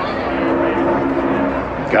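NASCAR Cup car's V8 engine at full throttle passing close by on a qualifying lap. Its pitch drops as it goes past and it then runs on steadily. An announcer's voice starts at the very end.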